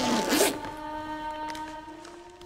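Plastic body bag's zipper pulled open in one quick, noisy zip that ends about half a second in. It is followed by a held chord of several steady tones that fades.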